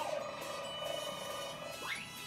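Electronic sci-fi sound effects from a TV's speakers: a steady warbling tone, with a falling swoop at the start and a quick rising swoop near the end.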